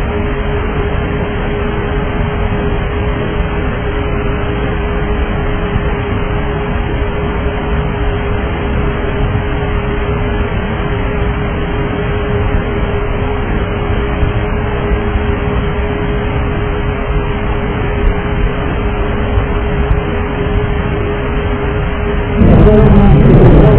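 Steady in-flight cabin noise of a McDonnell Douglas DC-9 airliner heard on a cockpit voice recorder's cabin channel: an even rush with a constant hum from the aircraft's 400 Hz electrical power. The sound is dull and band-limited, with nothing above the recorder's narrow bandwidth.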